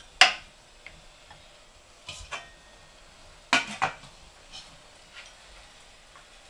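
Ceramic rice bowls and the metal pot of an electric rice cooker clinking as rice is dished out and bowls are handled: a few sharp clinks, the loudest just after the start and a close pair about three and a half seconds in, with lighter taps between.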